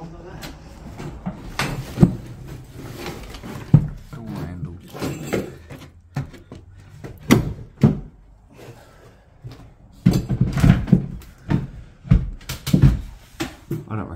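Irregular knocks and thumps from people moving about a small room, with indistinct voices between them.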